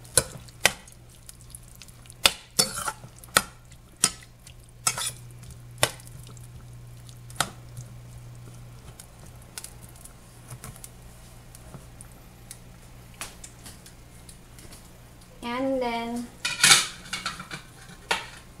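Metal spoon clinking and scraping against a stainless steel saucepan while stirring a thick vegetable sauce: a string of sharp clinks over the first eight seconds, then one more loud clink near the end, over a steady low hum.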